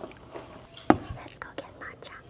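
Handling noises close to a clip-on microphone as a drinking cup is picked up at a desk: soft rustling with a few light clicks and one sharp knock about a second in.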